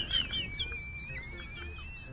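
Thin, high chirps and a long whistle-like tone that steps up slightly in pitch about halfway through, over a quiet background.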